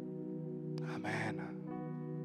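Soft background music of sustained keyboard chords, the notes held steady, with a sharp breath into a close microphone about a second in.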